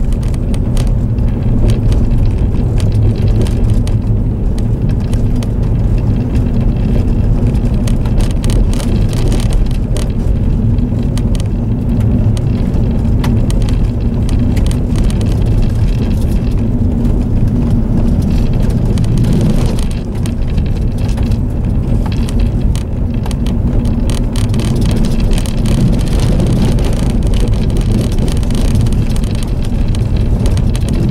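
Inside a Jeep driving on a gravel road: a steady low engine and road rumble, with tyres crackling over loose gravel and interior rattles throughout.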